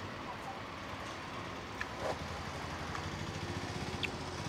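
Steady low engine rumble with a faint, rapid, even pulsing that grows a little stronger in the second half, and a few faint clicks.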